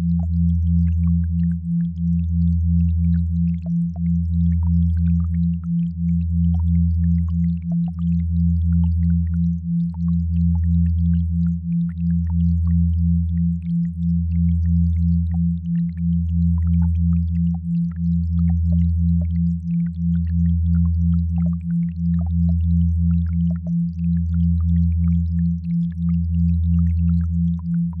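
Binaural-beat sine tones. A deep steady hum swells and dips about every two seconds, and a higher hum above it pulses about twice a second. The pulsing comes from pairs of slightly detuned tones beating against each other.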